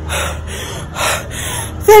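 A woman's heavy gasping breaths, two of them about a second apart, before her voice starts up near the end.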